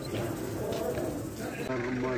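Open-air market ambience: a murmur of background voices and activity, switching abruptly near the end to a closer voice talking.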